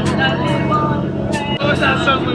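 Dive boat's engine running steadily as the boat cruises, a constant low drone under people's voices chatting aboard.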